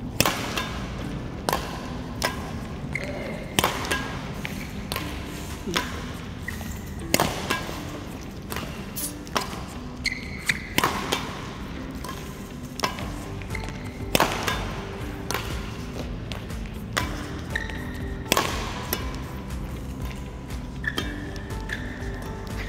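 Racket strings hitting feathered shuttlecocks in a multi-shuttle smash-and-tap drill: a sharp crack about once a second, smashes alternating with lighter net taps. Background music plays underneath.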